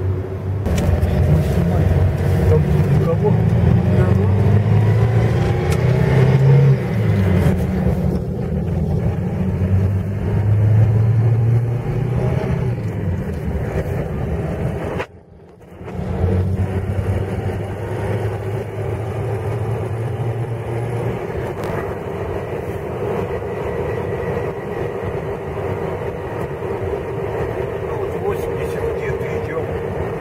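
Steady engine and road noise inside a VAZ-2120 Nadezhda minivan driving on asphalt on Forward Professional 139 mud-terrain tyres, with no marked hum from the tread. The sound drops out briefly about halfway through, then runs on evenly.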